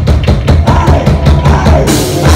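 Live thrash metal band playing loud: distorted guitars and bass over rapid, evenly spaced drum hits, with a cymbal crash opening up near the end.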